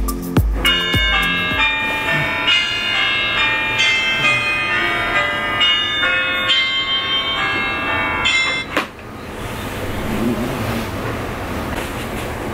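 Smartphone alarm tone playing a repeating chiming melody of bright high notes, cut off suddenly about nine seconds in when it is switched off. The last beats of an electronic tune end in the first second or so, and a soft rustle of bedding follows the alarm.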